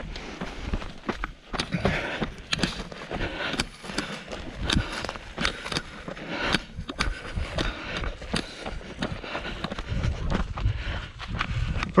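A person running over gravelly desert ground through dry grass and brush: an irregular run of quick, crunching footsteps.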